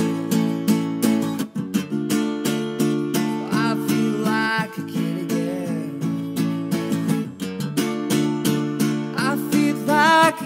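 Solo acoustic guitar instrumental break on a small-bodied parlor guitar, picked and strummed in a steady rhythm with notes ringing over one another.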